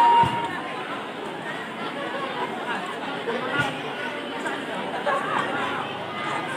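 A crowd of spectators chattering, many voices overlapping at once, with two brief dull thumps, one just after the start and one a little past the middle.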